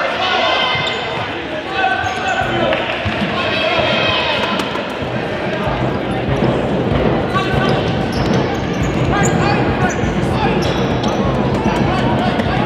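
Futsal ball being kicked and bouncing on a hardwood gym floor, with short sharp knocks throughout. Players and onlookers call out over it, and the sound rings in the large hall.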